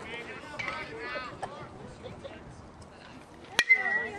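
A baseball bat hits a pitched ball near the end: one sharp crack followed by a short ringing ping. Faint crowd voices come before it.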